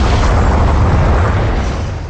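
Loud, steady wash of explosion-like rumble and hiss closing out a hip-hop track, beginning to fade away near the end.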